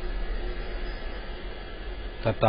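Steady low hum with an even hiss: the room's constant background noise from a running motor or fan.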